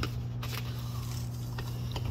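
Steady low hum of an inflatable hot tub's pump unit running, with a few light clicks of plastic chemical containers being handled.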